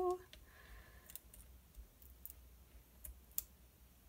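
A few faint, scattered clicks and taps of fingers and nails pressing paper embellishments down onto a scrapbook page.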